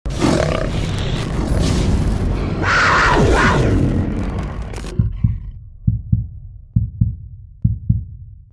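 Logo-intro sound effects: a loud rushing whoosh of noise with a sweep near the middle that cuts off abruptly about five seconds in, followed by low double thumps, like a heartbeat, about once a second.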